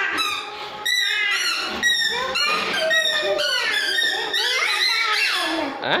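A toddler's high-pitched babbling and squealing: a run of short cries that slide up and down in pitch, one after another without a pause.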